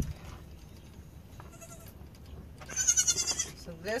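A young goat kid bleats: one loud, high, quavering call near the end, with a fainter, shorter call about a second and a half in.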